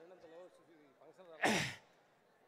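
A man's short, breathy exhale into a handheld microphone, falling in pitch, about one and a half seconds in, like a sigh or a laugh during a pause in his speech.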